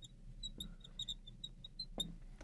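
Marker squeaking faintly on a glass lightboard as a word is written: a quick string of short, high chirps.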